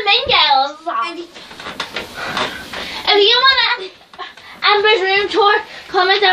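Young girls' high-pitched voices calling out in drawn-out stretches without clear words, three or four times.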